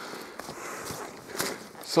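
Footsteps of a hiker walking on a dirt forest track, about two steps a second.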